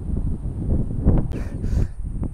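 Wind buffeting a clip-on microphone: an irregular low rumble, with a brief soft hiss a little past halfway.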